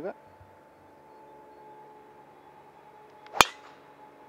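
A golf driver striking a teed-up ball: one sharp crack about three and a half seconds in, just after the brief swish of the swing. A faint steady hum runs underneath.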